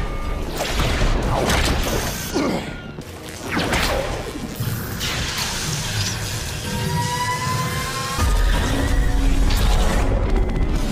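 Action-film battle soundtrack: dramatic score mixed with crashes, impacts and swooshes from a fight between armoured suits. A thin rising whine builds from about seven seconds, then a heavy low boom hits just after eight seconds.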